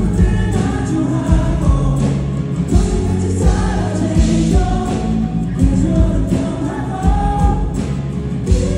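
Live band music: a male lead vocal sung over strummed acoustic guitar, bass and drums with a steady beat.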